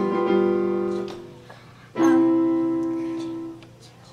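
Piano playing the closing chords of a piece: a held chord released about a second in, then a final chord struck about two seconds in, ringing and fading until it is released shortly before the end.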